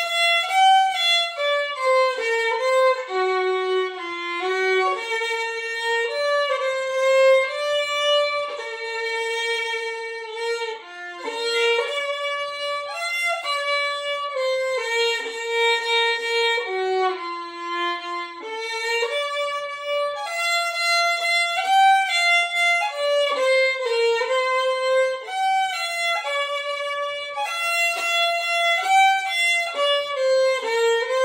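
Solo violin, bowed, playing a slow, lyrical pop-ballad melody one note at a time, with a short softer moment about a third of the way through.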